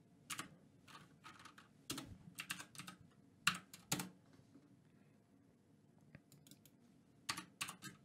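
Computer keyboard keys tapped a few at a time, typing gain values into a mixing program, with a lull of about three seconds before a last quick run of keystrokes near the end.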